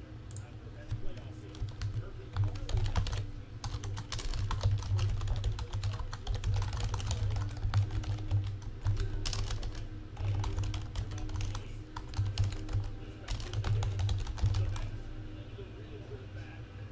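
Typing on a computer keyboard: quick runs of keystrokes broken by short pauses, over a steady low hum.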